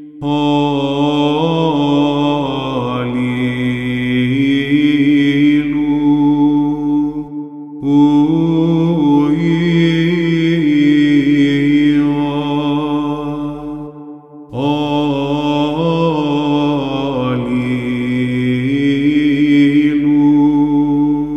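Solo male voice singing Byzantine chant in the plagal fourth mode: three long, ornamented phrases with brief pauses for breath about seven and fourteen seconds in.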